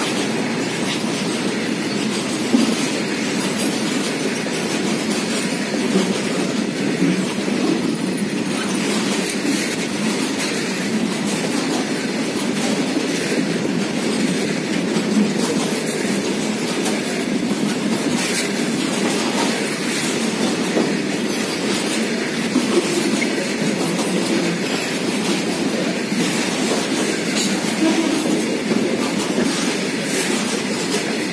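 A long rake of BCNA covered freight wagons rolling steadily past close by: a continuous rumble of steel wheels on rail, with occasional sharper clacks as the wheels cross rail joints.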